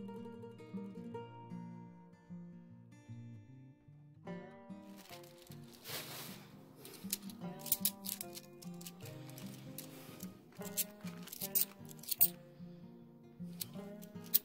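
Soft background guitar music plays throughout. From about four seconds in, a stack of 50p coins clinks and clicks as the coins are shuffled through the hands one at a time.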